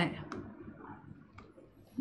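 Two faint clicks about a second apart: a stylus tapping on a touchscreen board while writing.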